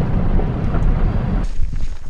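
Heavy wind buffeting the microphone at an open truck window, with the vehicle's low rumble underneath. It cuts off abruptly about one and a half seconds in, giving way to quieter outdoor sound with a few light knocks.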